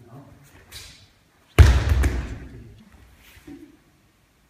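A body landing on the tatami mats in a breakfall: one loud thud with a slap, about one and a half seconds in, dying away over about a second in the hall.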